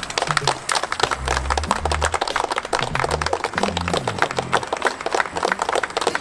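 A group of about ten people clapping their hands in applause, many quick claps throughout, over background music with a low bass line.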